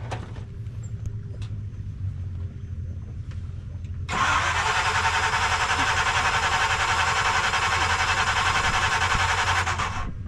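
Off-road Jeep TJ's engine idling low and steady. About four seconds in, a loud, harsh, fast-fluttering noise cuts in suddenly, runs about six seconds and stops sharply near the end.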